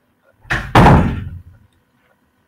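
Two quick heavy thumps close together about half a second in, the second louder, dying away within a second.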